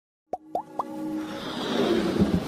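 Animated logo intro sound effects: three quick pops, each rising in pitch, about a quarter second apart, then a swelling whoosh with music building under it.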